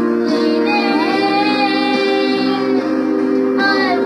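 Children singing a Christian worship song into a microphone, with an electronic keyboard playing sustained chords underneath.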